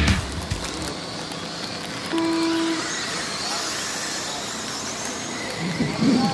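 A short steady electronic tone, held for under a second about two seconds in, over a steady hiss of outdoor noise. Faint whines of R/C cars follow near the end.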